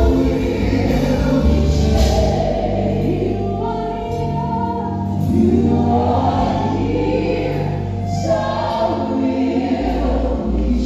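Live gospel song: a female lead singer and a male backing vocalist singing long held phrases over a band, with choir-like backing voices.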